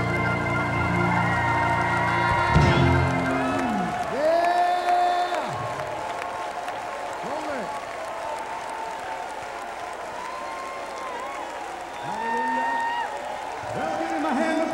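A church worship band's keyboard and organ hold sustained chords that drop away suddenly about two and a half seconds in. After that, softer held tones and a voice gliding up and down carry on over a congregation clapping and cheering.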